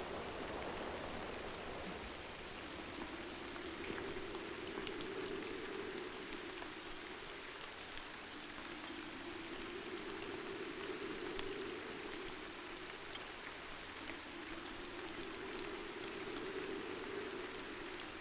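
Steady rain, with scattered faint drop ticks. A soft low hum swells and fades three times under it.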